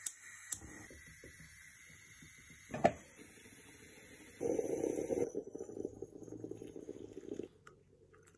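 Quiet room with close handling noise: one sharp click about three seconds in, then about three seconds of rustling.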